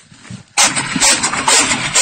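Loud rustling of a woven plastic sack and chopped green fodder as the fodder is pressed into the sack by hand to make silage, starting suddenly about half a second in.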